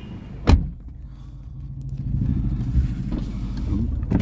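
A sharp knock about half a second in, then a low, steady motor-vehicle rumble that grows louder in the second half.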